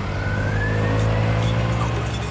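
Car engine running, a steady low drone with a thin whine that rises slowly in pitch, swelling a little toward the middle.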